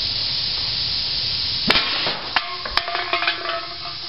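A homemade CPVC compressed-air carrot rifle fires with a single sharp pop a little before halfway through, hitting an aluminium soda can. The struck can then clatters and knocks, with a ringing tone, for about a second and a half. A steady hiss runs underneath until the shot.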